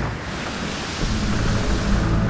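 Rushing wind and sea noise, with low music coming back in about a second in.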